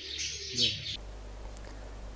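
Birds chirping faintly over the tail of a man's voice. About halfway through, the sound cuts abruptly to a low steady hum.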